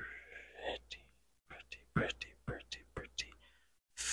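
Soft whispering close to the microphone, broken by a run of short, sharp clicks in the second half.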